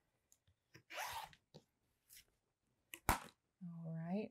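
Light handling of an acrylic quilting ruler and cut cotton fabric on a cutting mat: a short soft swish about a second in, a few faint ticks, and one sharp click about three seconds in.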